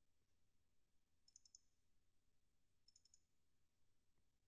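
Near silence with two faint clusters of computer mouse clicks, about a second and a half apart.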